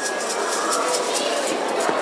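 Indistinct chatter of many children and adults talking over one another in a hall, with no single voice standing out.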